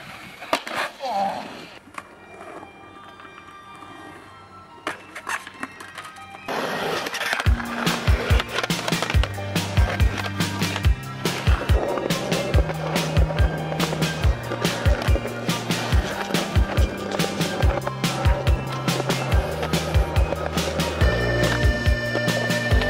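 Skateboard sounds: a few sharp clacks of the board popping and landing on concrete over the first few seconds. About six and a half seconds in, a music track with a steady drum beat and a bass line starts and carries on loud to the end.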